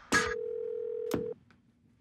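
A sharp hit, then a steady electronic tone like a telephone line tone, held for about a second and cut off abruptly.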